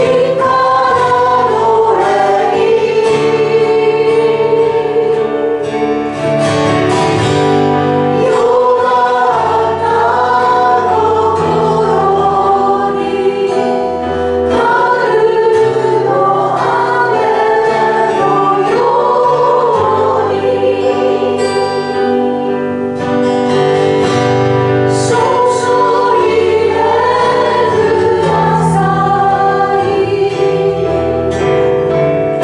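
A group of voices singing a slow worship song in Japanese over a steady acoustic guitar and held bass accompaniment.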